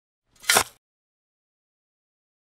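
A single short noisy cartoon sound effect, about a quarter second long, half a second in, as the shovel scoops away the pile of dog mess.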